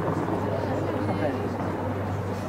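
Several indistinct voices of rugby players talking and calling out on the pitch, overlapping, over a steady low hum.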